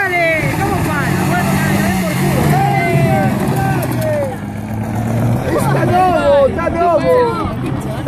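Car engine held at high revs while drifting with the rear tyres spinning and smoking, the pitch rising a little and falling back, then easing off about five and a half seconds in.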